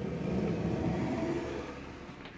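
Plastic snake-rack tub sliding along its shelf: a continuous rumbling scrape that swells, then fades out over about two seconds.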